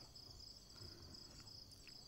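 Faint crickets chirping: a thin, steady, high trill under near silence.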